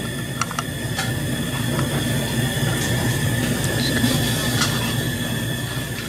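A steady low machine hum with a thin, constant high whine over it. A few light clicks come early on, from plastic petri dishes and lids being handled.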